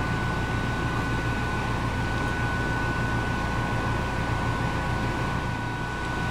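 Steady ventilation or air-handling hum and hiss, with a low drone and two faint steady tones, unchanging in level throughout.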